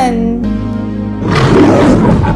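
A lion roaring, a rough growling sound effect that starts about a second and a half in, over steady children's background music.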